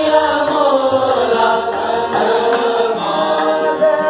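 A group of students singing a Hindustani classical composition in Raga Kedar in unison, the voices gliding between notes over a steady tanpura drone.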